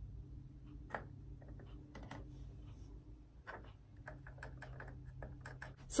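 Faint, scattered light clicks and taps of fingers against a plastic egg and a wire rack while paint is worked over the egg, with a few clicks close together near the end, over a steady low hum.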